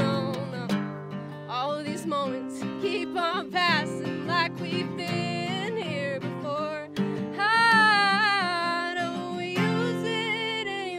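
A woman singing over an acoustic guitar, her voice sliding between notes, with one long held note near the end.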